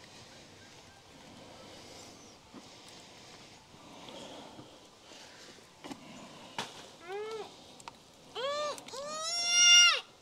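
A little girl starting to cry: a short wail about seven seconds in, then two more, the last a long, louder wail near the end. A couple of faint clicks come a second or so before the crying.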